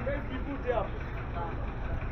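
Outdoor street ambience: voices of passers-by talking nearby over a steady low rumble.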